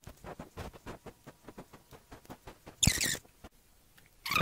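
Sped-up audio from a fast-forwarded screen recording: a quick run of faint ticks, then near the end a brief loud, high-pitched squeaky chirp like chipmunk-pitched voice.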